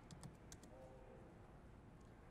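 A few faint laptop keyboard keystrokes in the first half second, then near silence: room tone.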